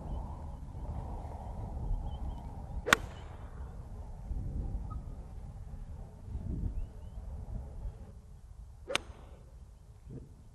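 A golf club striking a golf ball twice, two sharp cracks about six seconds apart, over a steady low background rumble.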